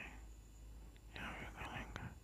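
Faint whispered speech, in short stretches in the second half.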